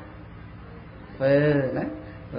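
Speech only: a man speaking Khmer into a microphone, silent for about a second before a short phrase near the end.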